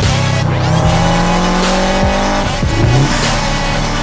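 A Subaru WRX's turbocharged flat-four engine running under a music track with a steady beat. The engine note slides down in pitch over the first couple of seconds.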